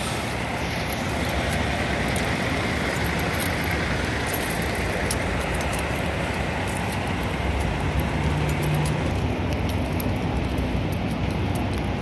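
Steady engine and traffic noise of semi-trucks running at a truck-stop fuel island, with a low hum that swells about eight seconds in.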